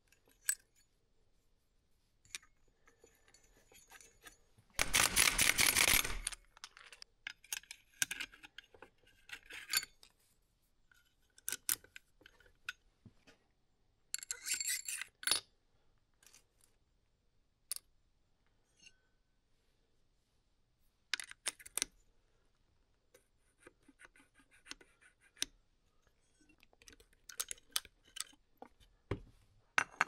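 Motorcycle clutch parts being handled and fitted by hand: scattered metal clicks and clinks of clutch plates, hub and pressure plate. A louder noisy burst of about a second and a half comes about five seconds in, with another cluster of clinks around the middle.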